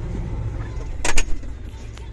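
John Deere 9760 STS combine harvester running while harvesting corn, a steady low drone heard from inside the cab, with two sharp clicks about a second in.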